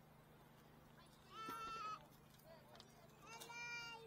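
Two drawn-out pitched calls, each well under a second, about two seconds apart, over a faint steady low hum.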